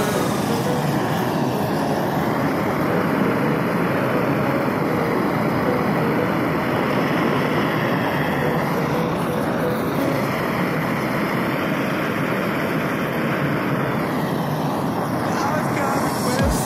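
Gas torch flame running steadily at full burn: an even, unbroken rushing noise.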